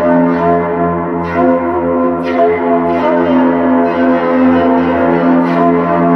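Yaybahar, its strings coupled through long coiled springs to frame drums, bowed into a sustained metallic drone with many ringing overtones and a long echo-like tail. A few sharper accents sound about one and two seconds in.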